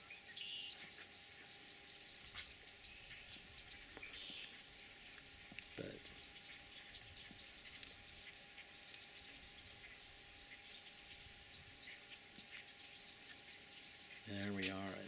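Faint outdoor ambience over a lake: a steady low hiss with a few brief, faint high chirps.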